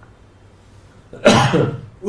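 A single short cough, a little past halfway through, after a quiet pause in the talk.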